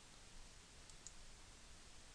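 Two faint computer mouse button clicks a fraction of a second apart, about a second in, over low steady hiss.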